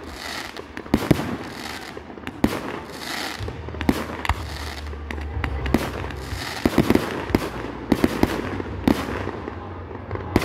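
Fireworks display: aerial shells bursting in an irregular run of sharp bangs, coming thicker in the second half, over a continuous hiss and rumble from the launches and a ground fountain.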